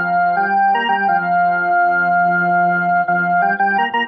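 Portable electronic keyboard played by hand in an organ-like voice: a slow melody of held notes over a low note sustained throughout.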